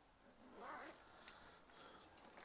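Faint rustling of a soft fabric pouch of cable adapters being handled and opened, with a small click a little over a second in.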